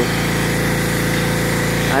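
Gas-engine pressure washer running at a steady speed, its small engine holding one even pitch.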